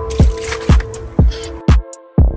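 Electronic dance music with a steady kick drum about two beats a second over a held synth tone, the bass dropping out briefly near the end. Water sloshes faintly as a paint brush is rinsed in a bucket of water under the music.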